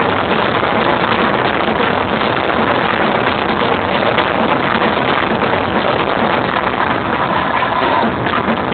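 Amplified dance music and crowd in a stadium, so loud that the handheld camera's microphone overloads into a steady, dense, distorted roar with no clear beat.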